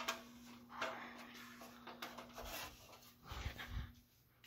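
Hampton Bay Littleton ceiling fan giving a steady hum, under scattered clicks, rustles and a few low thumps near the end from the camera being handled and moved.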